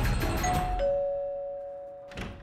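Two-tone 'ding-dong' doorbell chime: a higher note, then a lower one a moment later, both ringing on and slowly fading.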